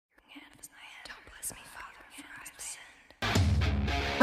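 Faint whispering voices. About three seconds in, a sudden, much louder steady low hum with noise cuts in.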